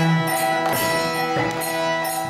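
Kirtan music: a harmonium holding sustained chords, with regular struck-percussion beats over it.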